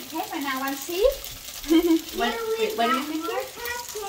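Bánh xèo batter frying in a pan on a gas stove, a steady sizzle, with voices talking over it.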